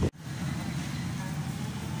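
Steady road and engine noise inside a moving car, starting right after a brief dropout near the beginning.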